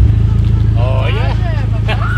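Vehicle engine running steadily close by: a loud low drone with a fine, even pulse. From about a second in, a voice calls out over it with rising and falling pitch.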